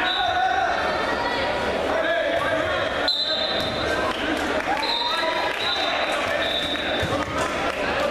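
Voices calling out in an echoing gym during a wrestling bout, over thuds and brief high squeaks from the wrestlers scrambling on the mat.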